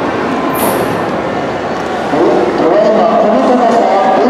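Steady mechanical rumble echoing in a large hall, with a short sharp hiss about half a second in; a voice begins speaking about two seconds in.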